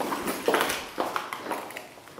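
A series of soft knocks and rustles, about two a second.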